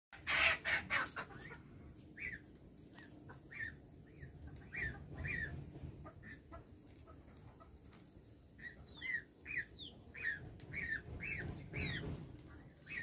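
A bird calling in short chirps, repeated about every half second to a second and most frequent in the second half, over a low steady rumble. A few loud sharp knocks in the first second are the loudest sounds.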